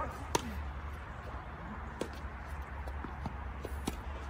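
Tennis rally: a sharp racket strike on the ball a third of a second in, then fainter, more distant hits and ball bounces about two seconds in and again near the end, over a steady low rumble.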